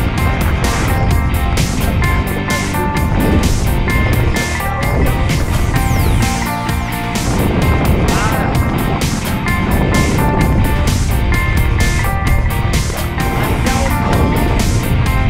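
Background music with a steady beat, over a low rumble.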